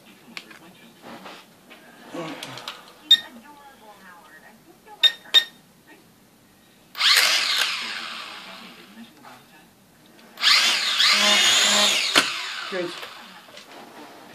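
A Syma X5C-1 quadcopter's four coreless motors and propellers spin up twice, in two bursts of a few seconds each that start suddenly: a high whine whose pitch swings up and down with the throttle. The propellers have just been refitted in their correct positions. A few short clicks and high beeps come before the first burst.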